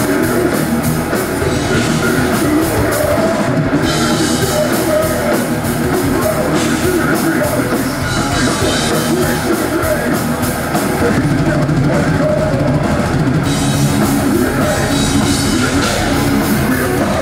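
A death metal band playing live: a pounding drum kit under heavily distorted electric guitars, loud and unbroken.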